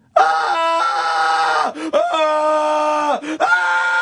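A person screaming three long, drawn-out cries, each held and then sliding down in pitch, in imitation of the screaming shoppers in a TV commercial.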